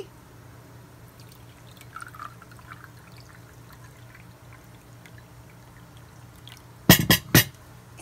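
Tea poured from a teapot into a china cup, a quiet trickle. About seven seconds in, a quick run of about four sharp clinks.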